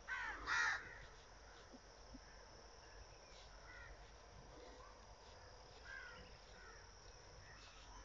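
Bird calls: two loud calls close together at the start, then several fainter calls later on.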